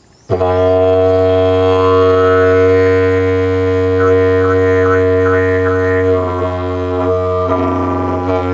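Eucalyptus didgeridoo keyed to G# starting a deep, steady drone just after the start. About halfway through, a quick run of short, higher overtone accents rides over the drone.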